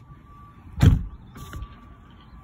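A car door, that of a BMW i3, slammed shut with one heavy thump about a second in, followed by a short sharp click.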